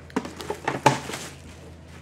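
A clear plastic ice-cube box and its wrapping being handled as it comes out of the packaging: a quick run of rustles, clicks and light knocks, the sharpest just under a second in, then quiet handling.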